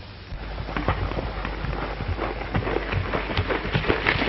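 Horse hoofbeats on a dirt trail: a quick, irregular run of thuds that starts about a third of a second in, over a steady low hum from the old film soundtrack.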